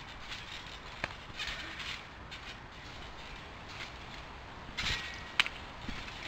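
Backyard trampoline being jumped on: quiet rustles with two sharp clicks, one about a second in and a louder one near the end as a jumper lands in the mat.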